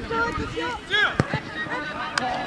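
Several voices calling out and shouting across an open football pitch, overlapping, with one loud call about a second in.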